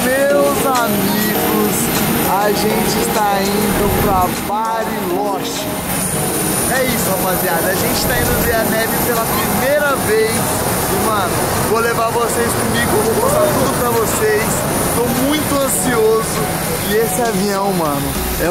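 People talking over steady engine noise at an airport apron, with a constant high whine.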